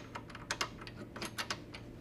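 A quick, irregular series of light, sharp metal clicks and taps, about ten in two seconds, as the XP-LOK end block is fitted into the steel bed of a Flexco XP staple fastener installation tool.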